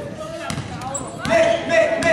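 Basketball being dribbled on a hardwood gym floor, with a voice calling out loudly over the bounces from about halfway through.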